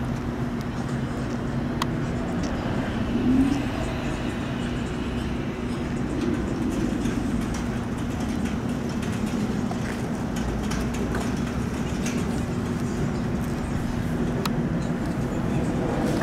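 Steady outdoor background rumble with a low mechanical hum, which holds level throughout, with a short rising whine about three seconds in and a few faint clicks.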